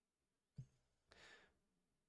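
Faint soft click, then a short breath out through the nose or mouth, a sigh lasting about half a second, picked up close to the microphone.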